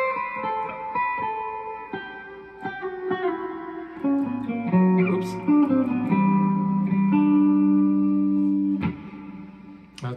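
Clean electric guitar playing single notes of a major scale, stepping down in pitch across the strings, then a low note held for about two and a half seconds that stops about nine seconds in.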